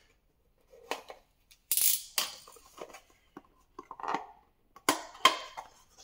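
Small cardboard box being opened by hand: a few short scrapes and rustles of its flaps being pried up and pulled, loudest about two seconds in and again near the end.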